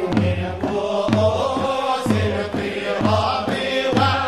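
An ensemble chanting a Sufi madih and sama' devotional song in chorus, with a regular low beat about twice a second beneath the voices.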